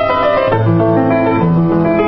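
A Kawai KG2 5'10" baby grand piano, recently restrung, being played: a melody over chords, with low bass notes coming in about half a second in.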